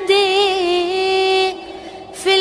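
A singer's voice holding one long, slightly wavering note in a nasheed, cut off about a second and a half in and followed by a short lull.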